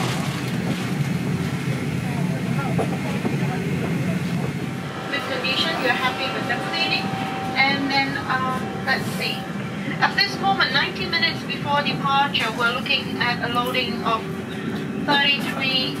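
Steady low hum of a parked Airbus A350-900's cabin air-conditioning and ventilation. From about five seconds in, indistinct voices talk over it in the background.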